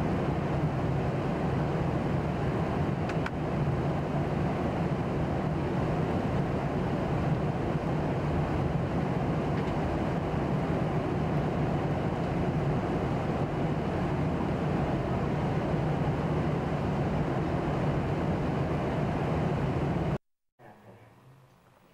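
Steady low drone of an airliner cabin in cruise: jet engine and airflow noise, even and unbroken.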